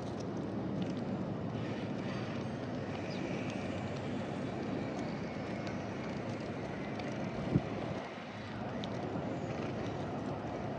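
Steady low rumble of distant engine noise, easing a little about eight seconds in. Over it come faint clicks of birds pecking seed close by and one sharp tap at about seven and a half seconds.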